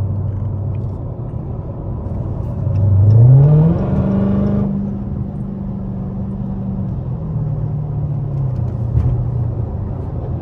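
Supercharged 6.2-litre Hemi V8 of a Dodge Hellcat fitted with headers, heard from inside the cabin. It cruises at steady revs, then about three seconds in the engine note climbs sharply as the driver gets on the throttle, holds higher for a few seconds, and drops back in two steps near the end.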